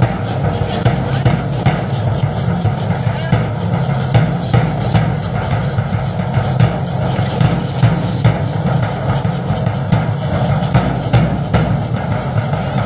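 Drum beating a steady, quick rhythm accompanying a danza de pluma dance group, with voices mixed in.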